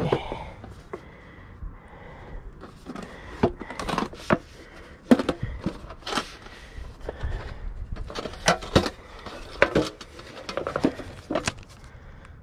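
Handling noise from a metal tin of DVDs in paper sleeves being opened and rifled through: irregular sharp clicks and knocks of metal and discs.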